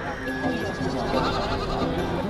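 Goats bleating over the chatter of a crowd.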